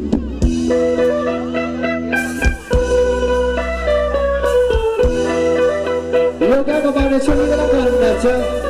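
Thai ramwong dance band playing live: held melody notes that step from pitch to pitch over a steady bass, with scattered drum hits and a wavering lead line in the last couple of seconds.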